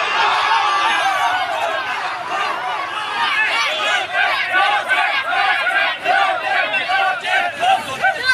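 A crowd of men shouting and cheering together, many voices overlapping, growing choppier about halfway through.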